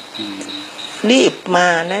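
A voice speaking Thai in short phrases over a faint, steady, high-pitched tone that fades out about a second and a half in.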